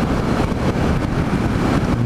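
Steady wind rush on the microphone of a Yamaha MT-07 motorcycle riding at speed, mixed with the bike's running and road noise.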